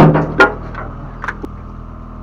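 Several sharp knocks and clatters from fishing gear being handled close by, the loudest in the first half second, over the steady low hum of the boat's engine.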